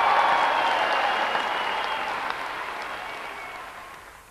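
A large concert audience applauding after a song, the applause fading steadily away.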